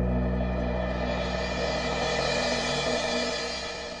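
A band's final chord ringing out with a cymbal, held notes slowly dying away, then fading out near the end.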